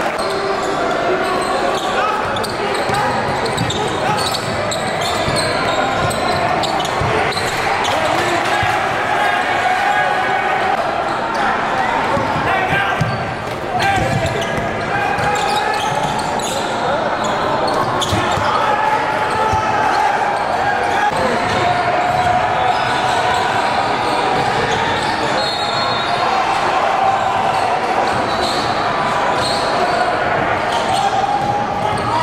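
Game sound from a basketball game in a gym: indistinct voices of players and spectators carrying through the hall, with a basketball bouncing on the hardwood floor.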